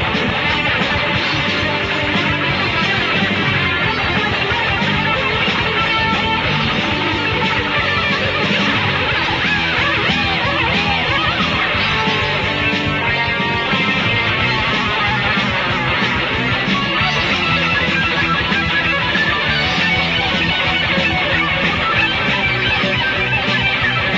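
Heavy metal song from a 1986 demo recording: a loud, steady guitar-led passage of distorted electric guitars with the band. About halfway through, a lead guitar line of bending notes rises above the rhythm.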